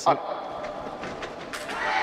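Indistinct voices over the steady background noise of a fencing arena, with a short voice sound at the start and the noise growing louder near the end.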